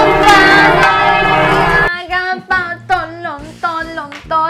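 A loud bell sound effect, for a notification bell, ringing together with a woman singing out, cutting off about two seconds in. A quick sung tune over background music follows.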